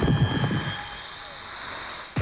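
Animated-film monster sound effect for the Hydra: a loud low rumble at first, thinning into a long airy hiss that swells toward the end and is cut off abruptly.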